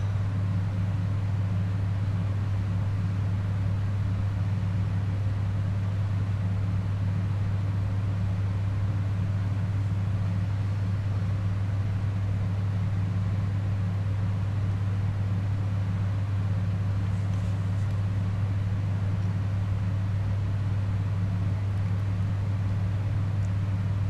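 A steady low hum with a fainter hum an octave above and a light even hiss, unchanging throughout: constant background noise in the recording.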